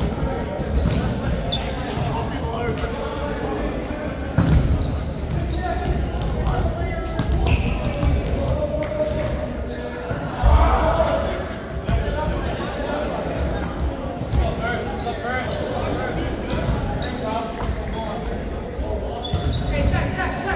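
Volleyballs being hit and bouncing on a hardwood court, with irregular slaps and thuds that echo in a large hall. Two hits stand out, about four and ten seconds in. Players' indistinct voices and shouts run underneath.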